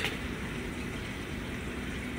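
Steady hum and rush of a large reef aquarium's water pumps and filtration, an even noise with no rhythm or distinct events.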